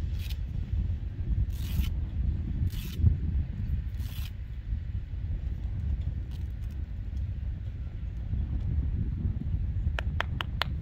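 A horse's fly mask being handled and adjusted, giving four short scratchy rasps in the first four seconds or so, over a steady low rumble.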